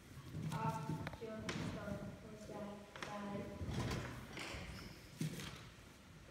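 Children's voices speaking in short phrases on a stage, picked up in a large hall, with a sharp knock about five seconds in.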